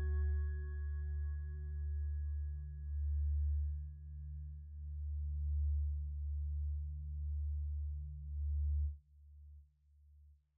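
Background music: a bell-like ringing tone fades away over the first few seconds above a low drone that swells about once a second. The drone cuts off sharply about nine seconds in, leaving faint fading echoes.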